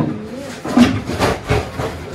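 Frying pans knocking against each other as they are taken out of a low kitchen drawer, a few sharp clanks in the second half, with some low muttering.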